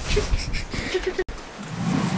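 A man laughing softly, cut off by an abrupt edit a little over a second in, followed by a low rumble of room noise.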